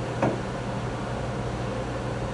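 Steady low background hum with one brief click about a quarter of a second in.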